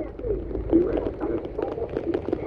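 Vehicle driving on a wet road in heavy rain: a steady low rumble of engine and tyres, with many small ticks running through it.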